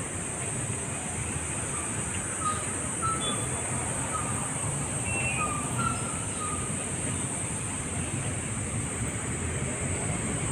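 Outdoor street ambience: a steady low rumble of road traffic under a constant high-pitched hiss, with a few faint short chirps scattered through.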